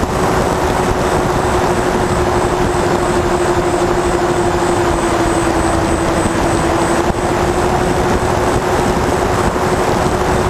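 Twin electric motors and propellers of a Twinstar 2 RC plane in flight, a steady whine that sags a little in pitch midway, heard from the onboard camera with heavy wind rumble on its microphone.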